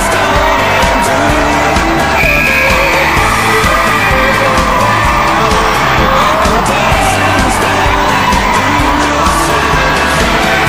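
A rock song playing as a soundtrack, in a passage without singing, with long held, bending lead notes over a steady beat.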